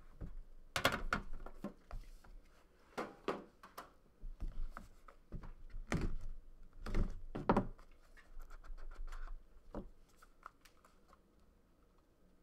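Utility knife cutting the seal of a trading-card box, with scrapes, clicks and knocks as the box is handled. The handling noise fades to a few faint ticks over the last few seconds.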